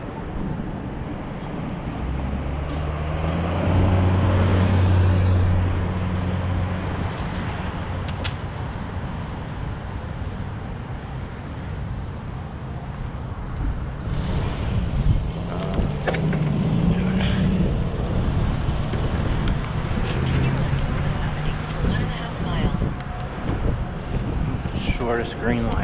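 Road traffic at a signalled intersection: motor vehicle engines running and passing, with one vehicle's low engine hum loudest from about two to seven seconds in, and more engines passing later.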